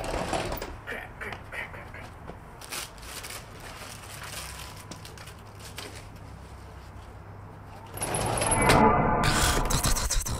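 Sliding glass patio door being opened and stepped through, with a run of small clicks and knocks in the first few seconds, then a louder stretch of sound about eight seconds in.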